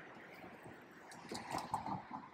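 Faint outdoor street background noise, with a few soft clicks and knocks in the second half.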